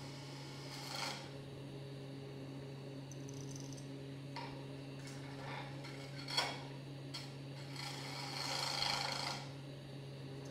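Wood lathe running with a steady low hum while a carbide-insert turning tool scrapes the spinning wood blank in short cuts: one about a second in, another a few seconds later, a sharp, loudest one past the middle, then a longer cut near the end.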